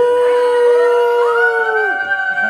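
Several women's voices holding a long drawn-out "ooh" cheer. One voice starts it, and two others join in at higher pitches about a second in.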